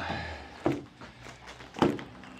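Soft roll-up tonneau cover being unrolled along a pickup's bed rails: a faint rustle, then two short knocks about a second apart as the cover settles onto the rails.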